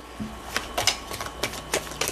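A deck of tarot cards shuffled by hand: a run of quick, irregular card flicks and snaps, starting about half a second in.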